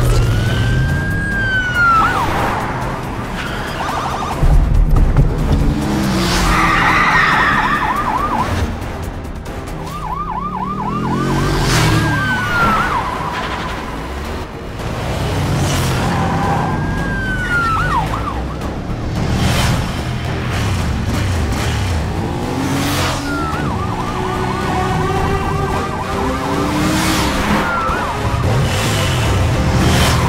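Police sirens sounding throughout, switching between a slow rise-and-fall wail and a fast warbling yelp, several times over, above vehicle engine noise.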